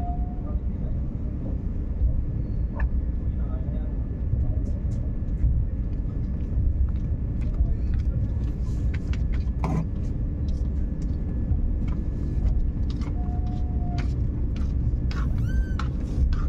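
Steady low rumble inside a passenger train coach as the train pulls slowly out of a station, with scattered sharp clicks and knocks from the running gear and coach.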